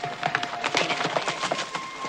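Horses galloping: a quick, uneven run of hoof strikes on hard ground.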